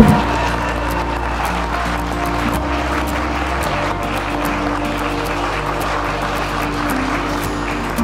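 A crowd of guests applauding steadily, mixed with background music, with a sharp loud burst right at the start.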